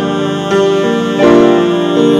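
Grand piano playing sustained chords, with new chords struck about half a second in and again just past a second in.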